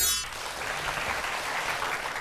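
Studio audience applauding steadily, just after the tail of a music stinger that ends in a falling sweep at the very start.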